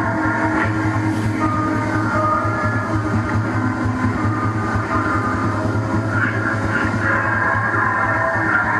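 Live electronic noise music played on synthesizers: a dense, steady layer of sustained tones over a low hum that flutters rapidly, shifting slowly as controls are turned.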